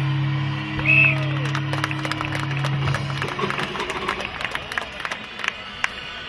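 Music over a loudspeaker with steady low notes that stop about three and a half seconds in, while spectators clap and cheer for a strongman pressing a tyre-loaded axle overhead.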